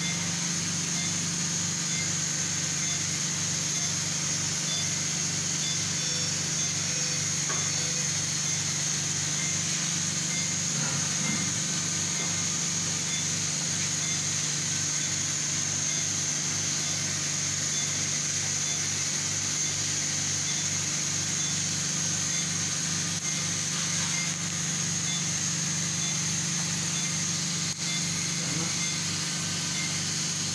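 Steady machine hum with a constant high-pitched hiss, unchanging in level, from equipment running in the endoscopy room.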